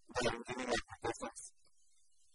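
A lecturer's voice speaking a short phrase of about a second and a half.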